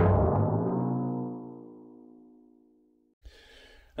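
A single struck musical chord, several notes ringing together and fading over about three seconds, then cut off abruptly, followed by faint room tone.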